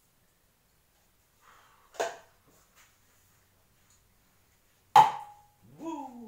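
Two sharp knocks about three seconds apart, the second much louder and ringing briefly; a short vocal sound follows near the end.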